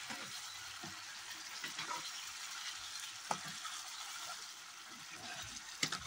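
Chicken pieces frying in oil and spice masala in a large metal pot, a steady sizzle, while a metal ladle stirs them and clinks against the pot a few times.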